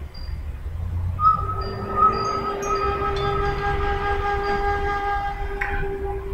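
A long horn blast, a steady chord of several tones held for about five seconds, starting about a second in over a low rumble.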